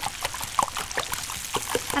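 Small wire whisk beating eggs in a glass bowl: a quick, irregular run of clicks and taps as the wires strike the glass.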